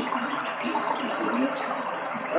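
A pause in a muffled recorded conversation: steady hiss and room noise, with a faint murmur about a second in.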